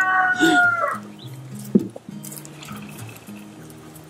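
A long, drawn-out animal call with a steady, slightly falling pitch that ends about a second in, followed by soft background music with low held notes and a single sharp click near the middle.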